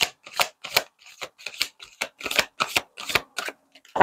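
A tarot card deck being shuffled by hand: a quick, even run of short card rasps, about three to four a second.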